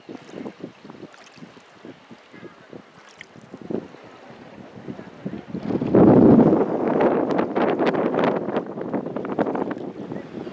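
Small choppy sea waves lapping and splashing close to the microphone, with wind buffeting it. About six seconds in, the rush and splashing become much louder and stay loud to the end.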